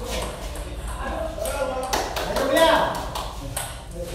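Table tennis ball clicking sharply off paddles and table a few times in a short rally in a hard-walled hall. People's voices call out from about a second in.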